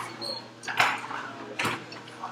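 Two sharp knocks or scrapes, one about a second in and another near the end, over low room noise: a classroom emptying after a lesson.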